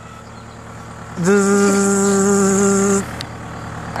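A person's voice holding one steady, buzzy note for about two seconds, starting about a second in.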